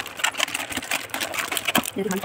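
A plastic fish bag crinkling in a rapid, irregular run of crackles as hands work it open over a bucket of water, with light splashing.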